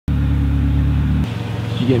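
A car's engine running, heard from inside the cabin as a steady low hum that cuts off suddenly about a second in. A voice starts ordering near the end.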